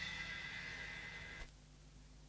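The band's final chord dying away: a faint, fading ring of held tones from the amplified instruments that cuts off suddenly about one and a half seconds in, leaving near silence.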